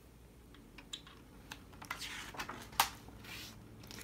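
Pages of a hardcover picture book being handled and turned: a series of light clicks and taps with a few short paper rustles.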